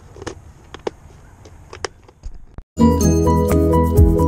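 A few sharp clicks of plastic tackle boxes being handled. About three seconds in, background music with a steady beat starts and takes over, much louder.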